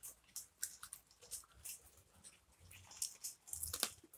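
Close-up chewing and biting into crispy fried fish: faint crunches and wet mouth clicks, coming thicker near the end.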